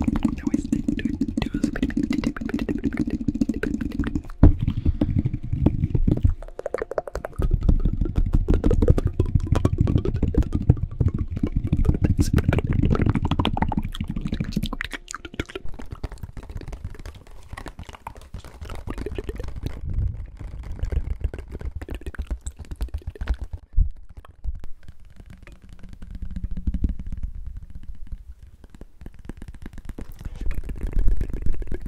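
Fast close-microphone ASMR triggers. For about the first half, hands rub and tap around the microphone with dense low handling rumble. After that come lighter, scattered clicks and taps from handling a clear plastic case.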